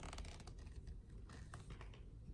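Two short runs of light, rapid clicks and taps, each about half a second long, the first at the start and the second a little past the middle, over a faint steady low hum.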